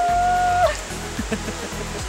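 Background music with a steady low backing; one voice holds a single note for about the first half second.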